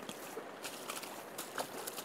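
Faint steady rush of a flowing river, with a few faint clicks.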